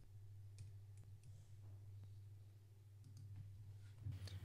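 Faint clicks of a computer keyboard and mouse, about half a dozen scattered ticks as a short PIN code is typed in and a button clicked, over a low steady hum.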